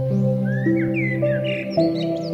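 Slow, calm instrumental relaxation music, its held notes moving to a new pitch about every half second, with small birds chirping over it.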